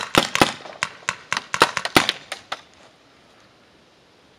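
Paintball marker firing a rapid, uneven string of about a dozen sharp pneumatic shots, stopping a little under three seconds in.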